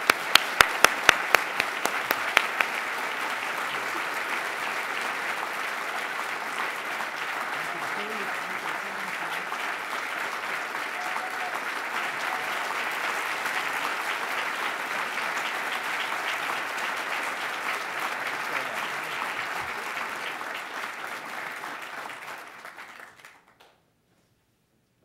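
Audience applauding in a hall, with a few loud, sharp claps close by in the first couple of seconds, then steady clapping that fades out just before the end.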